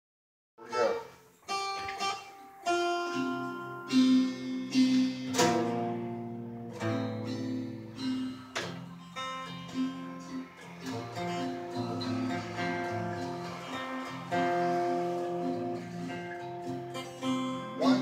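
Two acoustic guitars playing together, starting about half a second in, with picked single notes and then strummed, ringing chords in an improvised tune.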